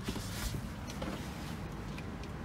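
Tesla Model 3 front door being opened: a faint click about half a second in, over steady low background noise.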